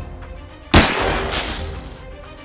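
A single loud gunshot about three quarters of a second in, with a noisy tail lasting about a second, over background music.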